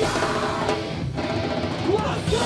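Live heavy rock band playing loud: electric guitars, bass and drums with a shouted vocal. About halfway through, the drums and cymbals drop out, leaving the guitars ringing.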